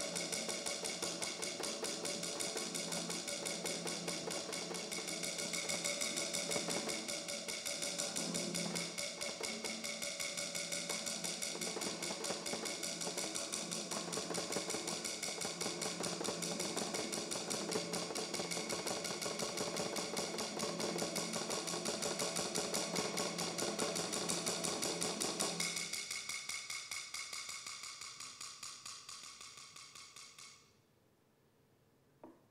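A metal plate pressed on a drum skin and beaten in a fast, continuous roll with a mallet, the metal ringing over the drum's resonance. Near the end the drum's low resonance drops away and only the metal ringing is left, fading out.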